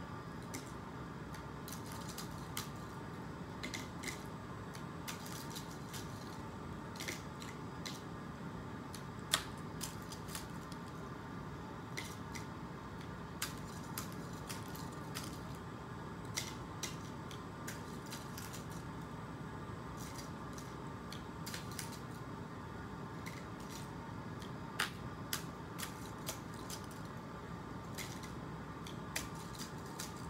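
Scattered light clicks and rustles as paper clips on paper fish are picked up by the nail of a one-D-cell electromagnet fishing pole, with a few sharper clicks, over a steady room hum.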